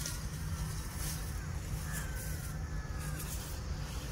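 Steady low rumble of wind buffeting the microphone, with a faint wavering high call heard briefly about two seconds in.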